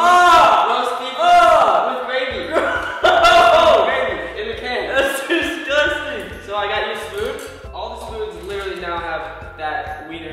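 Young men's voices shouting and laughing in excited bursts, with music underneath from a couple of seconds in.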